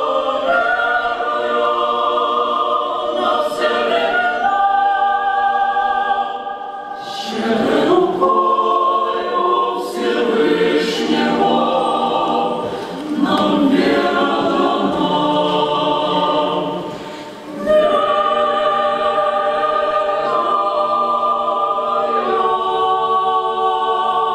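Mixed choir of women's and men's voices singing together in sustained chords, with a busier, more broken passage in the middle after a brief dip about seven seconds in, returning to long held chords near the end.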